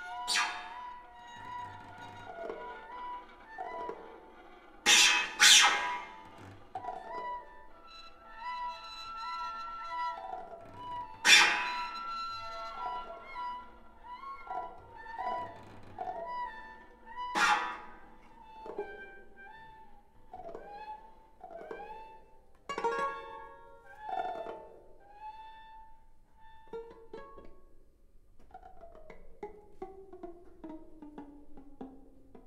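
Bowed strings of a violin, viola, cello and double bass playing in short notes and pitch slides, broken by sharp knocks: one about a second in, two in quick succession around five seconds, the loudest near eleven seconds and one more near seventeen. Near the end a long note slides downward.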